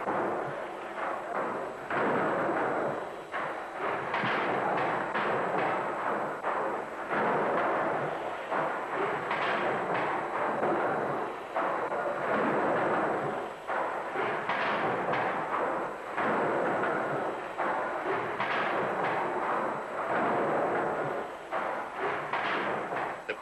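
Single-cylinder drop-valve condensing beam engine running, a dense rumbling clatter that swells and eases about every two seconds.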